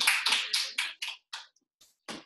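Hand clapping, dense at first, then thinning out and dying away about one and a half seconds in.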